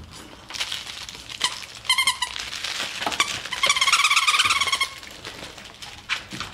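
A schnauzer puppy chewing a squeaky, crinkly toy. Rustling and crinkling, then a short stuttering squeak about two seconds in, and a longer, louder squeak a little before the middle of the second half.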